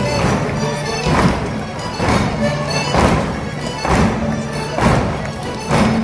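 Live Portuguese folk dance music from a folk ensemble, with a strong thump about once a second marking the beat.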